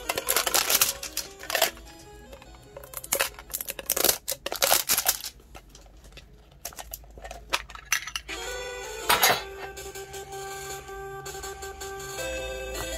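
Clear plastic shrink wrap crinkling and tearing as it is peeled off a small metal Pokémon card tin, in loud irregular bursts, heaviest in the first five seconds and again about nine seconds in. Background music plays throughout.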